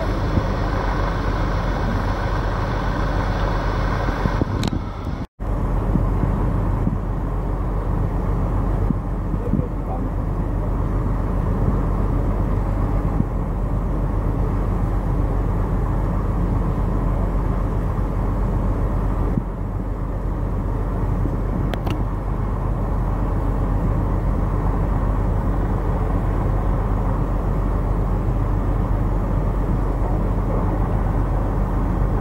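Steady low outdoor rumble of harbour ambience, dropping out for a moment about five seconds in.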